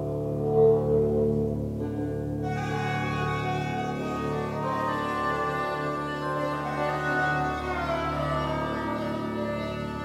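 ROLI Seaboard keyboard played with a sustained synthesized sound: held low notes, joined about two and a half seconds in by brighter upper notes that slide down in pitch as the fingers glide on the soft keys.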